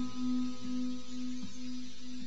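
A quiet break in the music: one low note held steady with a few overtones, marked by faint soft pulses about every three-quarters of a second.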